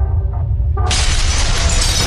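Logo-intro sound effect: a deep steady rumble, then about a second in a sudden loud crash of stone shattering into debris that keeps going.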